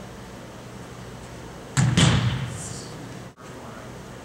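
A thrown football smacking into the receiver's hands: two quick impacts a quarter second apart about two seconds in, echoing in a large indoor hall.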